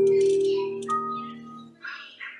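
Digital piano ending a piece: a final chord held and dying away over about a second and a half, with a faint short sound near the end.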